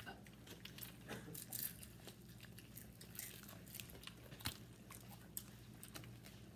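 People chewing and biting into crispy fried chicken, with faint, irregular small crunches and clicks throughout.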